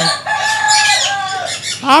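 A caged parrot giving one long, harsh squawk of over a second, holding a steady pitch and dropping near its end.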